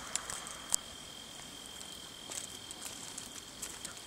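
A cricket singing a steady, unbroken high-pitched trill, with a few faint clicks over it, the loudest about three quarters of a second in.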